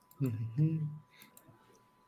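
A man's short wordless vocal sound, under a second long, followed by a few sharp clicks as a PDF is scrolled on a computer, over a faint steady tone.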